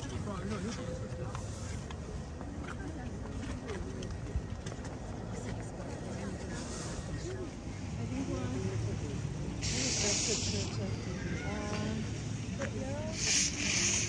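Several people talking at a distance, their chatter running on over a steady low hum. There are two short hisses, about ten seconds in and again near the end.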